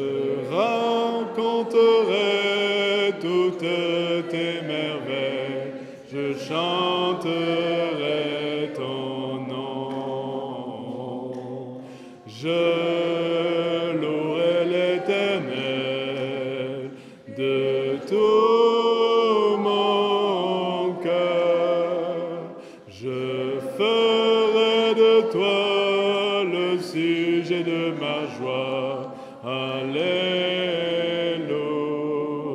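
Congregation singing a hymn together in sustained sung phrases, with short breaks between lines.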